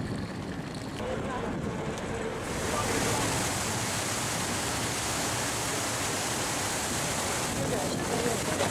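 Steady rush of wind and churning sea water in a ferry's wake, setting in about two and a half seconds in. Before it, a quieter stretch with faint voices.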